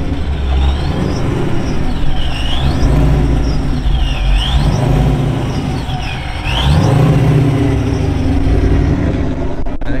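A V8 Ford Mustang GT revs about three times as it pulls away at low speed, a deep exhaust rumble swelling with each blip. A high whine dips and climbs with each rev.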